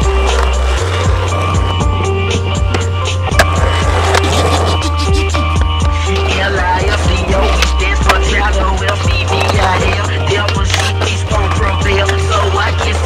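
Music with a deep, steady bass line, mixed with skateboard sounds: wheels rolling on concrete and sharp clacks of the board.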